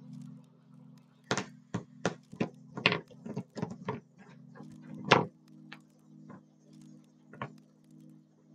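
A quick, irregular run of sharp clicks and taps, about a dozen over four seconds and the loudest just after the middle, over quiet background music.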